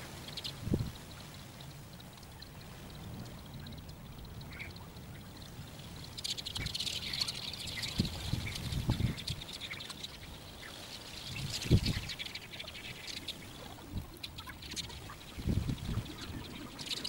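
Lakeside outdoor sound of water lapping, with a few low thuds now and then and a busier, crackling stretch of higher sound in the middle.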